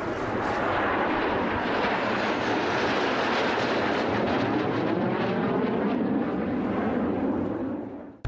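Two military jet fighters flying low overhead in formation: a loud, steady jet roar with a sweeping tone as they pass, fading away near the end.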